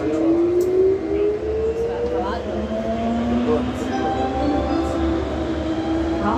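Turin metro VAL 208 driverless train running through a tunnel: the traction motors' whine glides slowly upward in pitch as the train picks up speed, over a steady low running rumble.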